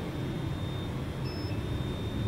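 A single short, high-pitched electronic beep a little past a second in, from the LED clock-timer's buzzer acknowledging a remote-control key press. It sits over a steady low hum and a faint thin whine.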